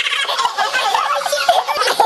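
Loud human voices hollering in a rapid, wavering, gobble-like babble, several voices overlapping.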